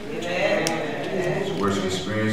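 A man's voice speaking slowly, the words unclear, with a short click a little over half a second in.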